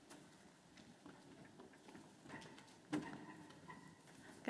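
Faint footsteps and small knocks in a quiet hall, with a louder thump about three seconds in.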